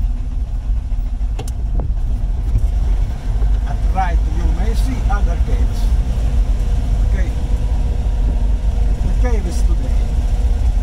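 Small vintage Fiat car's engine running as the car drives slowly, heard from inside the cabin as a steady low rumble.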